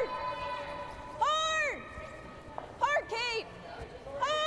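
Curling players shouting sweeping calls down the ice: two long held calls, one about a second in and a wavering one about three seconds in.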